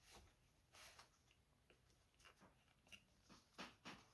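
Near silence, with a few faint short clicks and taps as metal binder clips are handled at the edge of the paper.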